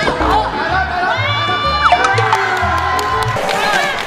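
Young women cheering and shrieking with excitement as they win a point, over a music track with a steady bass beat.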